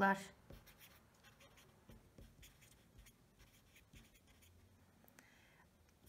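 Pen writing on paper: faint, irregular short scratching strokes.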